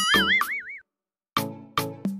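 A cartoon 'boing' sound effect with a wobbling pitch, lasting under a second, over a music track with a steady beat. The audio drops to silence for about half a second before the music picks up again.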